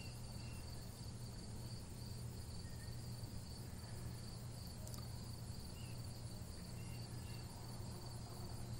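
Faint steady background room tone: a low hum with a steady high-pitched whine over light hiss, unchanging throughout.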